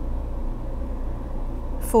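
A steady low hum of running machinery, with a spoken word near the end.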